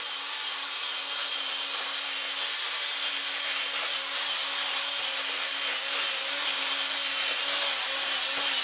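Cordless drill with a paddle attachment running steadily, stirring quick-set thin-set mortar in a small plastic bucket. The motor holds one even pitch under a bright hiss from the paddle churning the mix.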